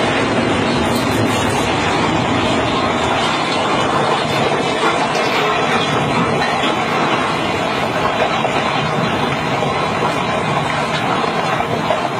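Loud, steady rumbling noise on a phone recording as a stone house is blown up with explosives and collapses in a cloud of dust; no single sharp blast stands out from the rumble.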